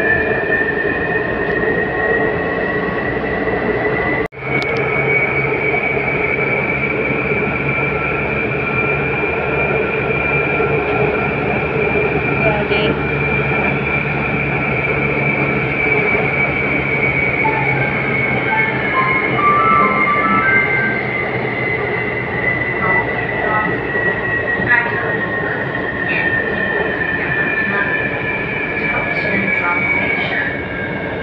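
Taipei Metro Circular Line train running at speed, heard from inside the car: a steady high electric motor whine over wheel and track rumble. The whine sags slightly in pitch past the middle as the train eases off. The sound cuts out briefly about four seconds in.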